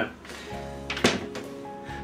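A single thunk about a second in, as the electric hand mixer is set down on the worktop, over quiet background guitar music with held notes that comes in about half a second in.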